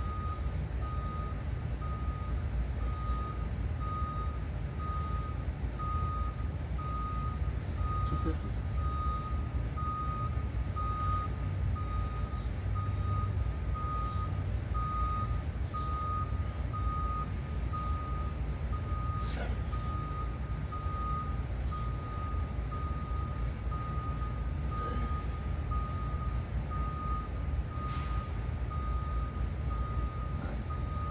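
A high electronic beep repeating evenly, about three beeps every two seconds, over a steady low rumble, with a few short clicks.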